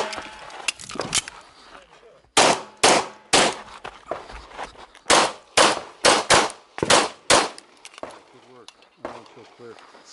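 Sig P320 X-Five pistol firing a fast string of shots, mostly in pairs about half a second apart, around ten shots from about two and a half to seven and a half seconds in, after a short lull. A voice is heard briefly near the end.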